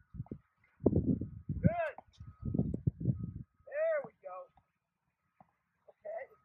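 Indistinct voices talking, with two short rising-and-falling calls, one about two seconds in and one about four seconds in.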